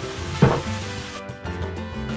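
Spicy Italian chicken sausage links sizzling in a hot nonstick frying pan over background music, with a single sharp thump about half a second in. The sizzle cuts off suddenly a little past halfway, leaving only the music.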